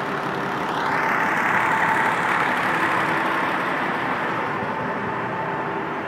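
Steady running of an idling fire-truck engine close by, with a faint held tone under the noise.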